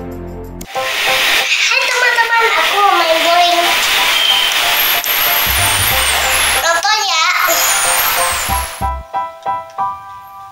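Children's voices shouting and cheering over a loud, hissing crowd-like noise for about eight seconds, between short stretches of music at the start and end.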